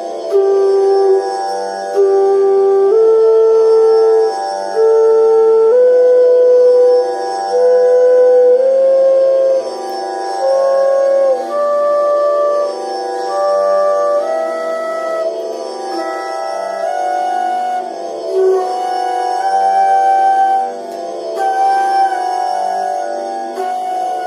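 Bansuri (bamboo flute) playing a Hindustani alankar practice exercise: held notes in overlapping pairs (Sa-Re, Re-Ga, Ga-ma…) climbing the scale step by step, with short breaks between pairs. A steady tanpura drone plays underneath.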